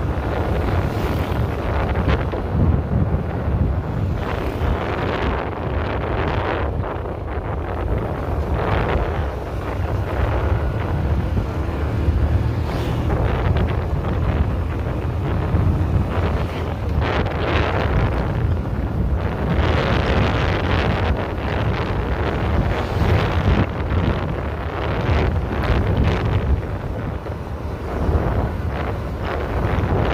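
Wind buffeting the microphone of a camera on a moving vehicle, rising and falling in gusts over a steady low rumble of engine and road.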